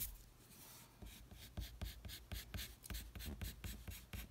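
Pencil drawing on paper: a run of short, faint scratchy strokes, several a second, beginning about a second in.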